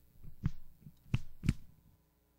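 A few dull thumps and knocks, the loudest three coming within about a second, from stage equipment being handled as the band stops playing.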